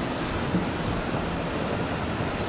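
Steady background noise of a large, crowded hall, an even wash of sound with no clear voice standing out.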